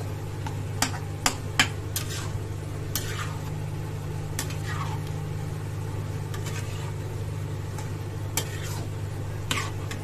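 A metal spoon stirring and scraping potatoes and spinach through a thick masala in a black metal kadhai. Sharp clicks and scrapes come at irregular moments where the spoon knocks against the pan, over a steady low hum.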